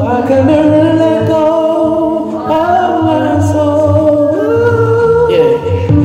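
Amplified male voice singing a wordless, wavering melody with long held notes over a pulsing bass line.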